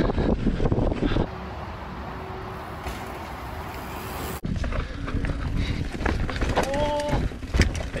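Mountain bike riding down a dirt singletrack: tyre rumble, knocks and rattles of the bike, and wind on the microphone. In the middle a steadier, quieter hiss takes over for about three seconds, then the rattling riding noise cuts back in suddenly.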